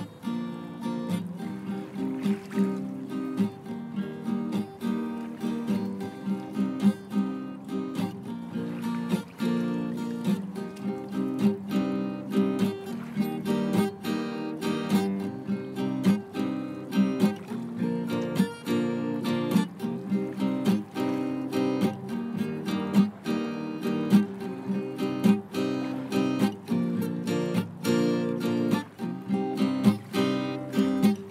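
Instrumental opening of an acoustic song: a plucked string instrument strummed in a steady rhythm, with no singing.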